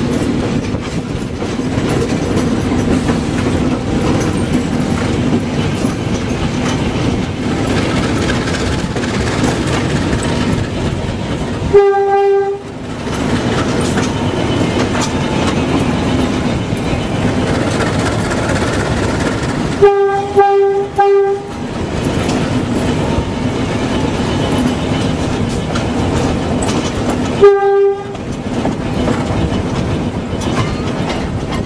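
GE U15C diesel-electric locomotive running steadily under way, its horn sounding one blast, later three short blasts in quick succession, and one more short blast near the end.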